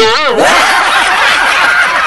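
Canned laughter sound effect: a loud burst of many voices laughing together.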